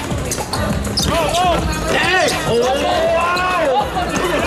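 Basketball being dribbled on a hard court, bouncing several times.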